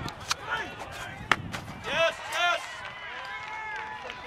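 A baseball popped up and caught in a fielder's leather glove at close range: a sharp smack of ball into glove about a second in, after a lighter click. A couple of voices call out just after.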